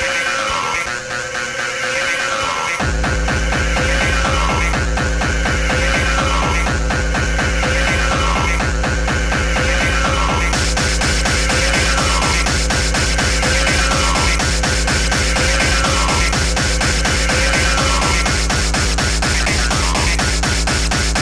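Speedcore / hardcore techno track: a very fast, distorted kick drum comes in about three seconds in and pounds on without a break, under falling synth sweeps that repeat about every two seconds. A brighter, noisier top layer joins about halfway through.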